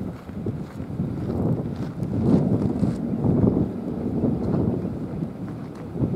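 Gusting wind buffeting the microphone: a rough low noise that swells and eases every second or so.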